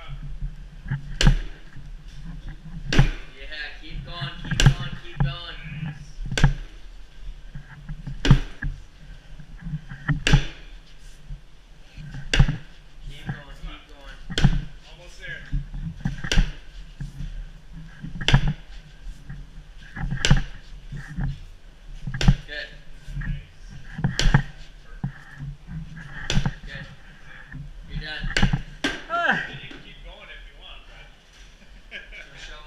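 Sledgehammer blows on a Keiser forcible-entry machine: a sharp strike about every two seconds, each hit driving the weighted sled along its track.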